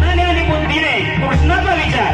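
A man's amplified voice delivering a devotional bhajan through the microphone, with instruments playing under it.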